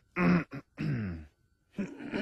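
Men clearing their throats one after another, about three gruff throat-clearings, each falling in pitch.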